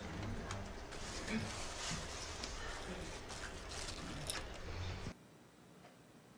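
Faint room ambience with soft scattered clicks and rustles. It cuts off suddenly about five seconds in, leaving near silence.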